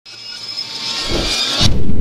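Logo-intro sound effect: a hissing whoosh that builds over about a second and a half, then breaks off suddenly into a loud low rumble.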